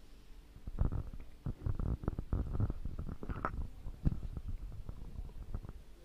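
A run of irregular, dull low thumps and rustles starting about a second in, loudest around one and four seconds.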